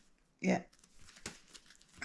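Cardboard picture cards being handled and laid down on a bedspread: a few faint rustles and soft clicks.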